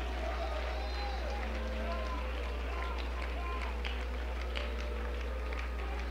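Scattered congregation voices praising aloud, faint and overlapping, over a steady low hum.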